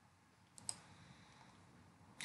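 Near silence with two faint computer mouse clicks a little over half a second in, the second one louder.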